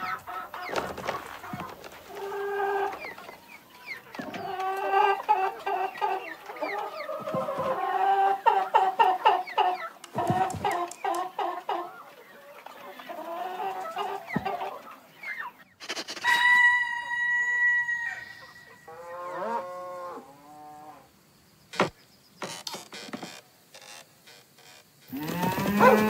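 Cartoon hens clucking and squawking in many short, choppy calls, with one long held call partway through. Cattle mooing near the end.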